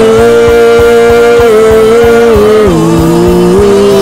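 Male gospel vocal trio singing through microphones, holding long notes in close harmony; the chord steps down about two-thirds of the way through and partly back up near the end, over a soft low pulse about four times a second.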